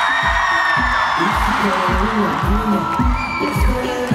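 Live pop band playing on stage, with a kick drum beating steadily about twice a second under the bass line.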